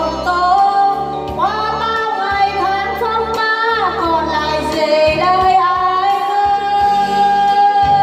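A woman singing a ballad into a microphone, accompanied by a Yamaha electronic keyboard playing over a steady low beat; in the second half she holds one long note.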